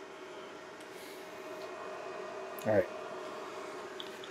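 Qidi Tech X-One2 3D printer running a print: a faint steady hum holding a couple of steady tones.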